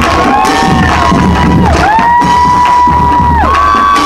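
A drum line playing music while a crowd cheers, with several long high held tones that slide up into each note and back down.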